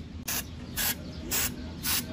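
Aerosol developer from a dye-penetrant test kit sprayed in four short hissing puffs, about two a second, onto a stainless steel weld. The white developer draws out any red penetrant left in cracks, which is the inspection step of the dye-penetrant test.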